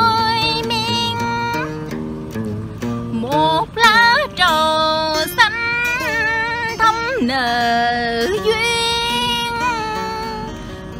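A woman singing Vietnamese ca cổ (cải lương style) in long, wavering held notes with slides between them, accompanied by plucked acoustic guitar.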